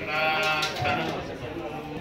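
A voice chanting a puja mantra in long, held notes that waver in pitch.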